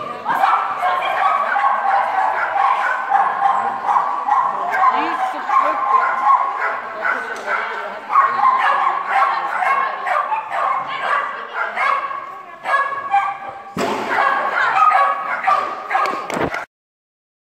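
A dog barking and yipping over and over in quick succession, with high-pitched calls and barely a pause, while running an agility course. There is a brief break about three-quarters of the way through.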